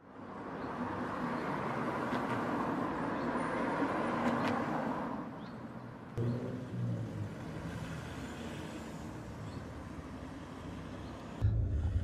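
Street traffic: a steady hiss of passing cars' tyres and engines, dropping in level about six seconds in. Near the end it gives way to the low rumble of a car's interior on the move.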